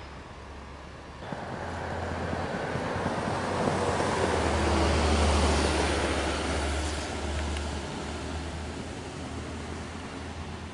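A road vehicle passing by: a rushing noise with a low rumble swells about a second in, is loudest around the middle, then fades.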